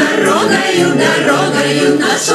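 Music with a group of voices singing together.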